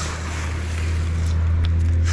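Gutter-cleaning vacuum system running steadily: a low hum with a rushing of air through the tubing, growing a little louder about a second in.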